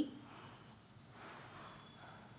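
Pen writing on ruled notebook paper, the soft strokes of a word being written coming and going faintly.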